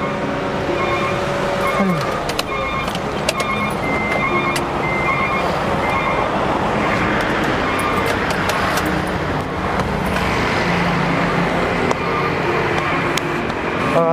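Steady roar of busy street traffic, with cars and motorbikes passing close by, and background music with short note-like tones running underneath. A few sharp clicks break through now and then.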